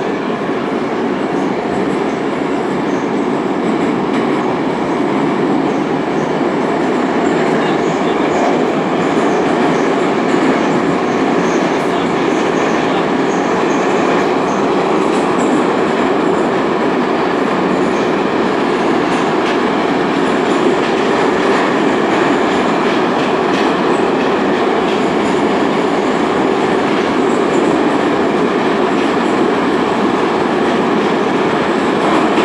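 81-722/723/724 "Yubileyny" metro train running through a tunnel, heard from inside the passenger car: a steady, loud rumble of wheels and running gear.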